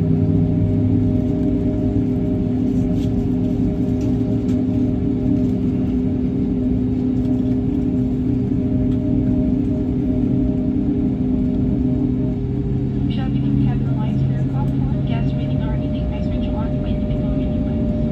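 Airbus A320-family airliner's jet engines at low taxi power, heard from inside the cabin as a steady hum with several held tones. Faint, indistinct voices rise about two-thirds of the way through.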